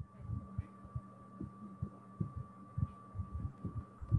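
Soft, irregular low thumps, several a second, picked up by the microphone. Under them runs a steady faint high whine and hum from the recording setup.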